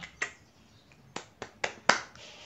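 A series of six short, sharp clicks at uneven spacing: two right at the start, then four in quick succession in the last second, the last one the loudest.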